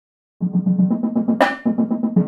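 Sampled marching drumline playback (Virtual Drumline in Sibelius): pitched tenor drums played with puffy mallets, with the snare and bass lines, in a fast run of sixteenth-note strokes that starts about half a second in. One sharp accented shot about a second and a half in sounds hard rather than soft, because the library has no puffy-mallet sample for shots.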